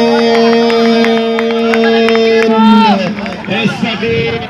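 A man's long drawn-out shout of 'goal', held on one steady pitch for almost three seconds and then falling away, over scattered sharp claps.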